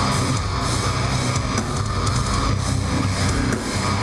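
Metal band playing live, loud and dense: distorted electric guitars over a drum kit, steady through the whole stretch.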